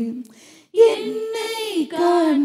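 A woman singing a Tamil worship song into a microphone: she holds a note, breaks off briefly for a breath, and starts the next phrase just under a second in.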